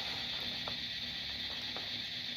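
A steady high-pitched buzz, of the kind a forest insect chorus makes, runs under a faint low hum and a few faint ticks.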